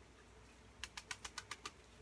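Light, quick clicks, about six a second, from a small plastic grow pot full of chunky bark mix being tapped on its sides to settle the mix around a hoya cutting's roots. The clicks start about a second in.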